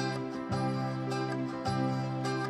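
Live instrumental music on acoustic guitar and electronic keyboard, with a sustained bass note that changes about once a second under plucked guitar notes.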